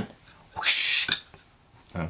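A short hiss, about half a second long, starting about half a second in.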